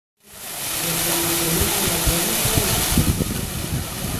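Outdoor ambience fading in just after the start: a steady rushing hiss of a plaza fountain's splashing water, with wind buffeting the microphone in low irregular thumps.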